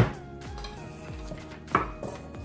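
A knife and a stainless steel mixing bowl being handled on a wooden cutting board: a sharp knock at the start and a second, shorter knock near the end.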